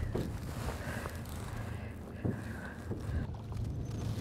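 Wind and water noise around a small aluminium boat: a steady low noise with a couple of faint knocks.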